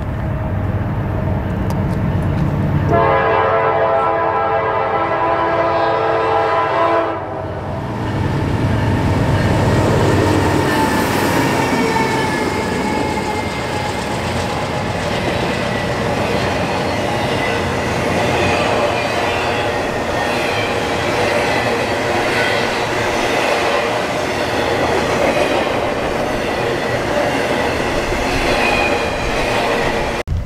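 Norfolk Southern freight train: the diesel locomotives approach and sound the horn in one blast of about four seconds, then pass close by. After that comes the steady rumble and clatter of intermodal trailer and container cars rolling past.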